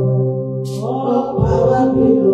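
A woman singing a slow worship chant into a microphone in long held notes.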